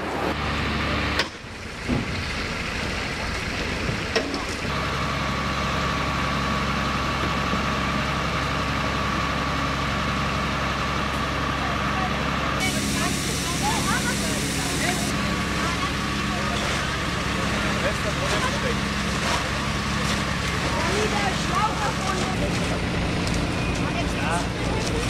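A fire engine running steadily with a low engine hum. A steady whine joins about five seconds in and a hiss sounds for a few seconds past the middle, with faint voices behind.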